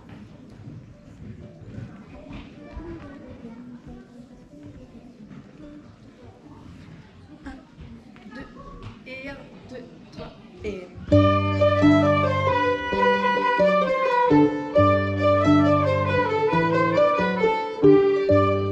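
Low room noise with faint rustles and clicks, then about eleven seconds in a traditional ensemble of accordion, flutes, fiddle and harps starts a Breton rond de Saint-Vincent together: a lively melody over a pumping bass pattern that starts and stops in a steady rhythm.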